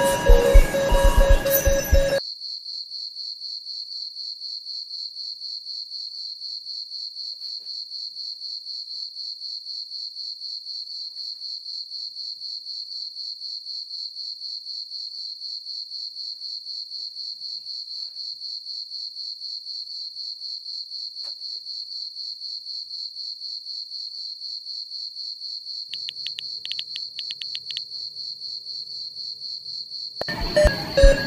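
Crickets chirping in a fast, even pulse, a night-time ambience that starts abruptly about two seconds in when the music cuts out.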